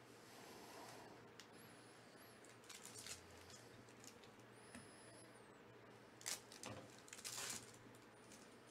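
Faint crinkling and rustling of a foil trading-card pack being handled and torn open, with short bursts about three seconds in and stronger ones in the last two seconds. A few faint high-pitched squeaks come and go.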